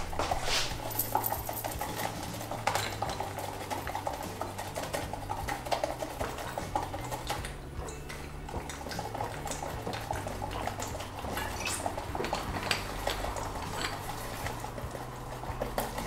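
Wire whisk beating egg yolks and sugar in a metal bowl: a fast, steady clatter of the wires against the metal. The mixture is being whisked until it is blended and pale.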